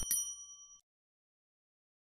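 Subscribe-animation sound effect: a quick mouse click, then a bright notification-bell ding that rings for under a second and stops.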